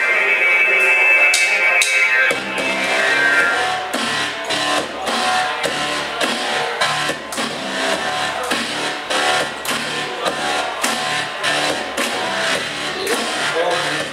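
Live rock band playing. A held chord rings for the first two seconds or so. Then the drums and bass come in together and the band plays on with a steady beat.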